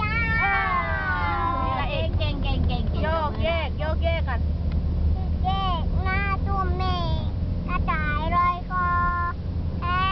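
A toddler girl singing in a high, thin voice: short sung phrases with a few held notes, near the end one held level. Under it runs the steady low rumble of the moving car inside the cabin.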